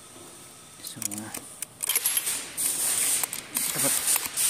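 A loud, steady hiss, like a spray, starts about two seconds in, with a few scattered clicks in it.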